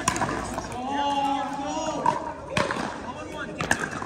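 A voice holds one drawn-out, steady note for about a second, then a couple of sharp pickleball paddle hits on the plastic ball as a rally goes on.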